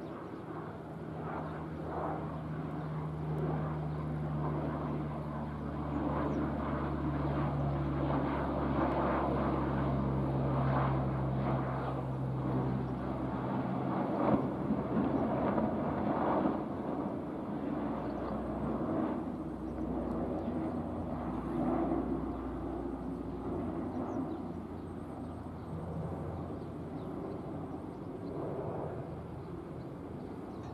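C-130 Hercules four-engine turboprop transport flying overhead with a steady propeller drone, which fades out a little under halfway through. After that only a broad rushing noise remains.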